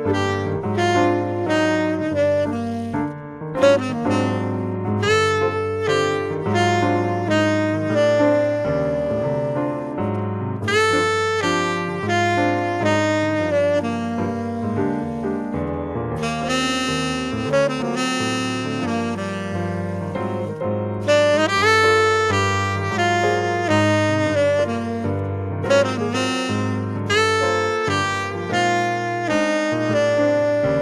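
Tenor saxophone playing a jazz melody in phrases over grand piano accompaniment.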